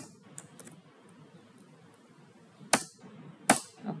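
Computer keyboard keystrokes pressed one at a time: a sharp click at the start, two light taps shortly after, then two louder clacks about a second apart near the end.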